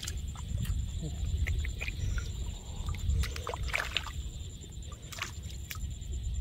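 Hands sloshing and splashing in shallow muddy water, feeling through the mud for snails, with scattered small splashes and clicks over a steady low rumble.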